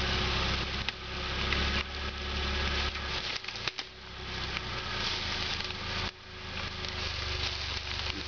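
Suzuki Samurai's engine running at low revs as it crawls over obstacles. Its low note drops away briefly about three and a half seconds in and again at about six seconds, over a crackle of leaves and twigs under the tyres.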